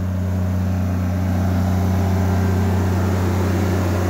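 Honda EB12D diesel generator with a Kubota engine running steadily, a constant low drone.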